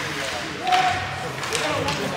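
Ice hockey play in a rink, heard as a few sharp knocks of puck and sticks against the boards and ice, the loudest just under a second in, over voices.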